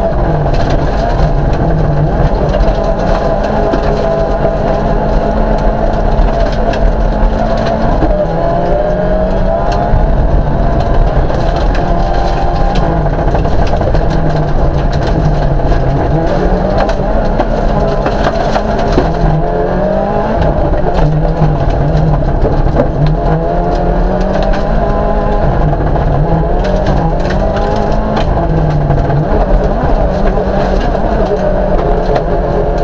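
Autocross race car engine heard from inside the cabin at racing speed, revving up through the gears and dropping back repeatedly as the car brakes and accelerates through the corners. Frequent short knocks and rattles run over the engine sound throughout.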